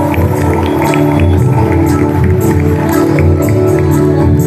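Live band playing an instrumental passage: held keyboard chords over a steady hand-percussion and drum beat, heard through a large hall's sound system.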